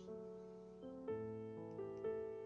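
Soft background piano music: slow, held notes, with new notes coming in about a second in and again near the end.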